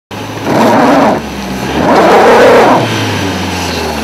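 Stuck car's engine running, revved in two loud surges about a second long while the front wheel spins in loose snow and digs itself in deeper.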